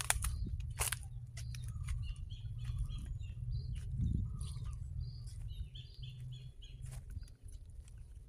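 Small birds chirping in short, repeated calls over a steady low rumble, with a few sharp clicks.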